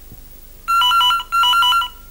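Electronic telephone ringing: two warbling trills, each about half a second long with a short gap between, starting a little over half a second in.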